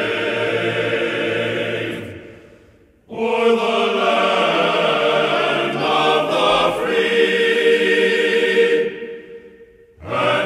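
Background music of a choir singing sustained notes. One passage fades out about two seconds in, a new one begins about a second later, and it fades away again near the end.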